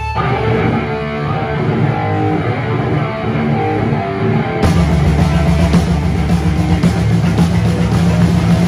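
Live rock band playing loud: guitar and bass at first, then the drums and cymbals come in about four and a half seconds in and the full band plays on.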